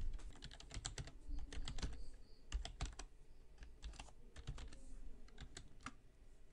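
Typing on a computer keyboard: a run of irregularly spaced, soft key clicks.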